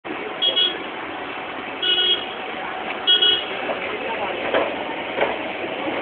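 A vehicle horn honking three short times, about a second and a half apart, over steady street traffic noise.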